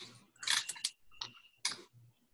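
A quiet run of short, sharp clicks and crackles close to the microphone, about five in two seconds, with a few quick ones clustered near the middle.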